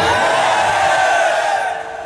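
A man's single long, high-pitched shout through a PA microphone, rising at the start, held, then fading out near the end.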